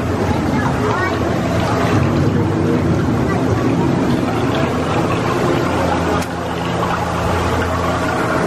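Ride-boat ambience: a steady low hum as the attraction boat moves along, with voices mixed in.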